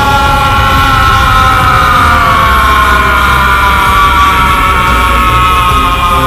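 A dubbed anime character's long, held power-up scream, loud and slowly falling in pitch, over a steady low rumble and background music.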